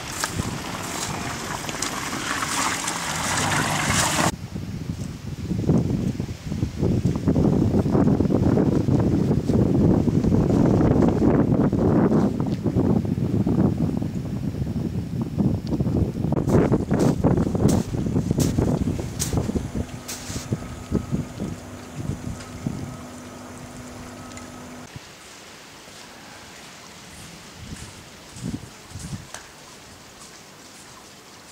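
Wind buffeting the camera microphone in irregular gusts outdoors, loudest through the middle of the stretch and dying away to a quiet background near the end.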